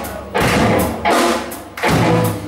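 Live rock band with electric guitars, bass and drums playing loud, accented full-band hits about every 0.7 s, each dying away briefly before the next.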